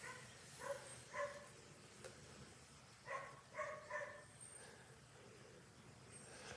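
Faint barking of a dog: two short barks, then three more a couple of seconds later.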